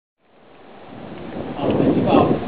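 A rumbling background noise fades up from silence, and a voice begins near the end.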